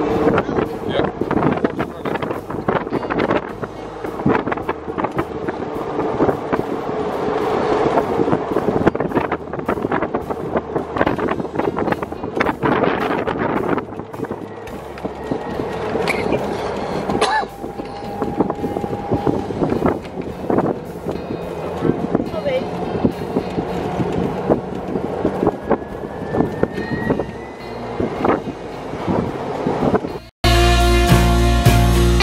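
Road and wind noise from an electric 2014 Club Car Precedent golf cart with a Navitas AC motor conversion driving along at speed, with wind buffeting the microphone and a steady tone through the first half.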